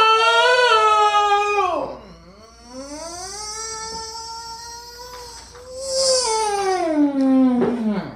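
A man's exaggerated stretching yawn given as two long, drawn-out high vocal groans. The first is loud and ends about two seconds in; the second is held longer and slides down in pitch near the end.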